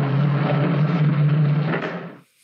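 Plastic wheels of a child's Big Wheel tricycle rolling over a hardwood floor: a steady, rough, loud rumble that dies away at the end.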